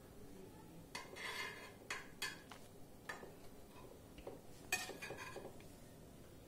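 Faint, scattered clinks and taps of metal cutlery against a ceramic plate. Short ringing clinks come about one and two seconds in, with a quick cluster of taps near the end.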